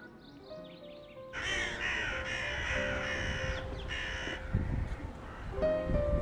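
A crow cawing: a run of about four harsh caws starting a little over a second in, over soft background music.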